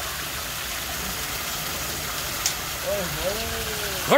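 Water running steadily through a concrete fish-farm raceway, a constant, even rush.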